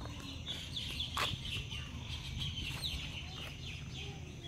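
Birds chirping in quick succession, a stream of short, high, falling chirps, over a steady low rumble. There is a single sharp click about a second in.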